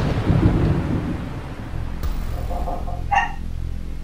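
Thunder rumbling and dying away over steady rain, then a dog barks once about three seconds in.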